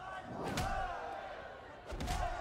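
Movie fight-scene hit effects: a heavy punch-or-kick impact about half a second in and another near the end, over shouting from the onlooking crowd.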